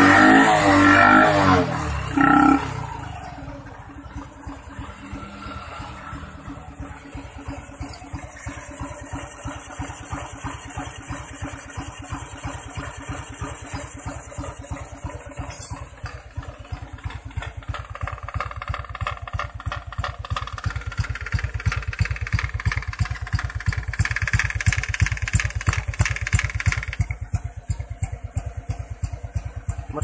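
Honda Wave 110i's single-cylinder four-stroke engine revving briefly, then idling with a steady, even beat that grows somewhat louder in the second half.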